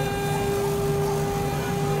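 Laser cutting machine running as its head traces a cut: a steady mechanical hum with a constant pitched tone, and a low drone that comes and goes as the head moves.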